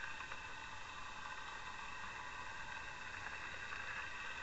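Steady underwater noise heard through a camera's waterproof housing: a faint, even hiss with a steady hum in it.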